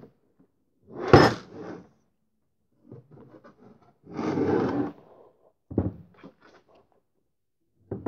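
The top cover of an IBM 5235 Data Entry Station's housing being lifted off and handled. There is a sharp knock about a second in, scraping and rubbing between about three and five seconds, another knock near six seconds, then a few light clicks.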